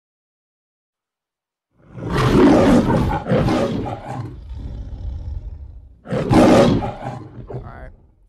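Lion roaring, the MGM logo roar: two loud roars in quick succession about two seconds in, a lower growl, then another roar about six seconds in that fades out.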